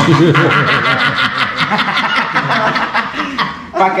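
Laughter: a long run of quick, repeated pulses that dies away a little before the end.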